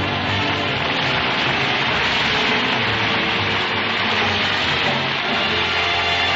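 Studio orchestra playing the act-break music cue of a 1940s radio comedy broadcast, settling into a held chord near the end.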